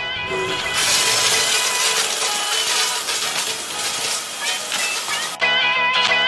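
Background music over the steady rush of a running shower spray, which cuts off suddenly about five seconds in while the music carries on.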